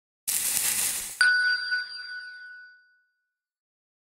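Logo sound effect: a short rushing swish, then about a second in a bright bell-like ding that rings on and fades away over about two seconds.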